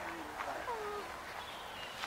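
Bird calls: a few thin whistled notes sliding down in pitch, two lower ones in the first second and a higher one near the end.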